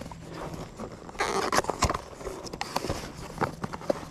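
Handling sounds of a folding knife and a cardboard box: scattered clicks and knocks, with a short scraping rustle of cardboard about a second in.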